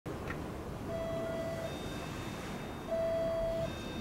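Two steady electronic beeps of the same pitch, each just under a second long and about two seconds apart, the second louder, over a constant background hiss.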